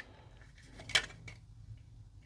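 Hard plastic model-kit body parts clicking against each other as they are handled and fitted together, with one sharp click about a second in and a few fainter ticks.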